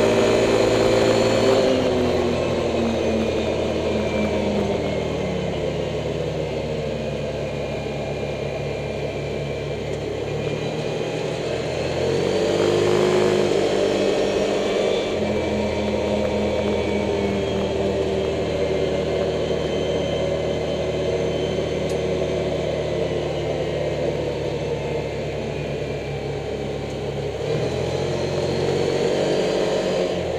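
Off-road vehicle's engine running while driving a gravel road. The engine note eases off about two seconds in, swells about halfway through, then settles, and rises again near the end as the throttle changes.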